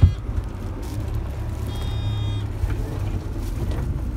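Steady low engine and road rumble of a moving coach bus, heard inside the passenger cabin. A thump comes right at the start, and a brief high-pitched squeak about two seconds in.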